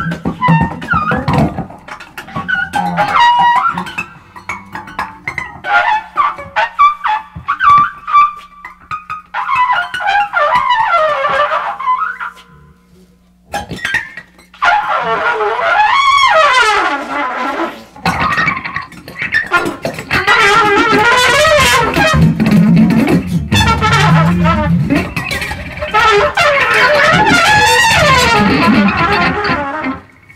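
Trumpet and guitar improvising together, the trumpet playing bending, sliding lines over the guitar. The music breaks off briefly about halfway through, then comes back denser and louder in the last third.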